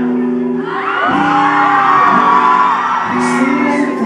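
Acoustic guitar strumming held chords live while the crowd screams and whoops over it, loudest in the middle. Near the end, short hissy beatbox sounds start into the cupped microphone.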